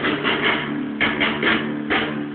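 A guitar being strummed, a few chords a second, its notes ringing on between strums.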